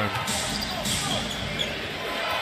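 Basketball arena ambience: crowd murmur with a ball bouncing on the hardwood court during play.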